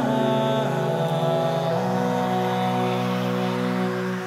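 A cappella vocal ensemble holding sustained, wordless chords, moving to a new chord about two-thirds of a second in and again near two seconds in.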